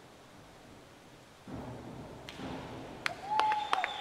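A diver entering the pool with a short splash about a second and a half in. A few sharp claps follow, then a short steady high note from the stands near the end, the loudest part.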